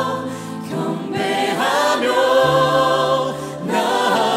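A worship band and group of vocalists performing a praise song live, the voices singing phrase after phrase over held bass notes, with brief breaths between phrases about half a second in and again near the end.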